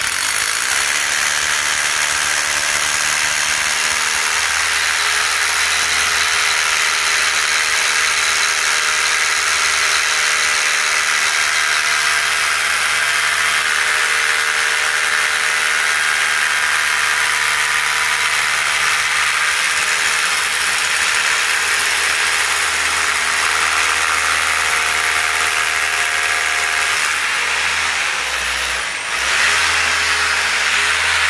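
Corded electric drill with a long masonry bit running steadily as it bores right through a tiled wall. Its pitch dips briefly near the end, then picks up again.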